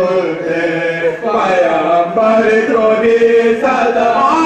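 A group of men chanting a marsiya, an Urdu elegy, in unison, with long held notes that glide up and down in pitch.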